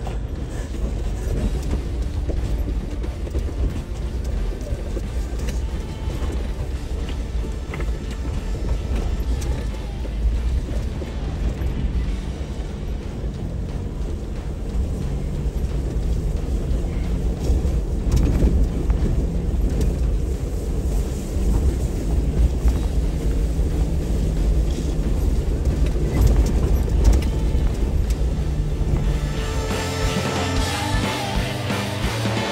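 Off-road vehicle driving slowly down a gravel wash: a steady low rumble of engine and tyres on stones, with music playing underneath it, more distinct in the second half.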